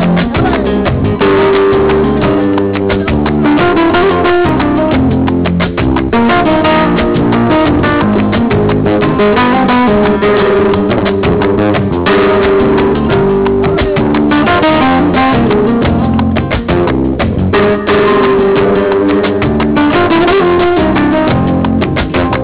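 Flamenco guitar playing, a dense run of plucked notes and sharp strums.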